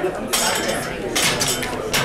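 Metal clanking and clinking from barbell plates and collars being handled, with a quick run of sharp clinks in the second half.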